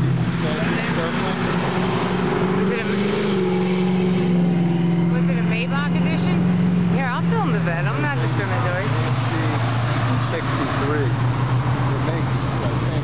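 A car engine and exhaust drone steadily, rising slightly in pitch about three seconds in and dropping in pitch near the eight-second mark as the car goes past. People talk over it.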